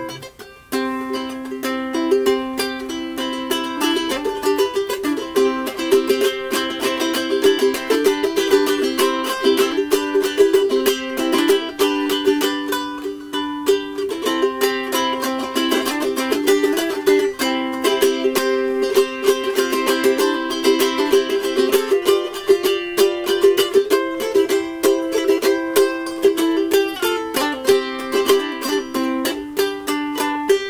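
Solo ukulele, strummed, playing the song's tune as an instrumental break without singing: a steady run of quick strokes with the melody moving between notes.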